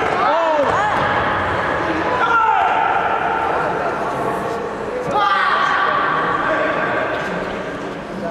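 Several voices shouting and calling out in a sports hall during a karate kumite bout, with sharp short shouts about half a second in, at about two seconds and at about five seconds, over a constant background of voices.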